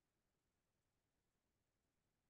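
Near silence, with nothing but an extremely faint, even background hiss.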